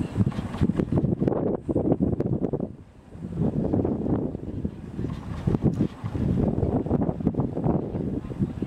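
Wind buffeting the microphone: an irregular, gusting rumble with a short lull about three seconds in.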